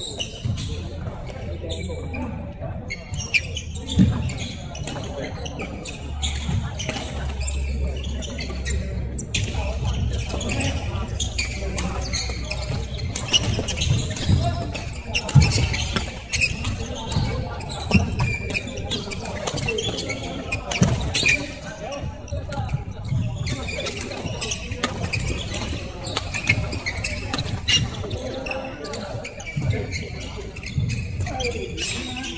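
Badminton play in a large, echoing sports hall: repeated sharp racket hits on the shuttlecock from this and neighbouring courts, with players' voices in the background.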